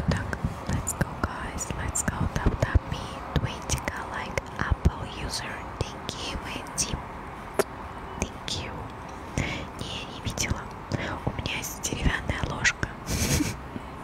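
ASMR whispering close into a microphone, with many small sharp clicks and brief hissing breaths between the whispered words.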